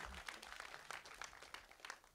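Scattered audience applause: many sharp claps that thin out and die away near the end.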